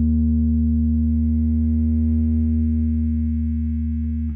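Electric bass guitar holding its final long note, ringing steadily and fading slowly.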